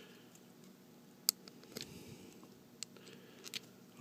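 Small hard-plastic action-figure parts clicking as a toy gun is pulled apart by hand: one sharp click just over a second in, then a few fainter clicks.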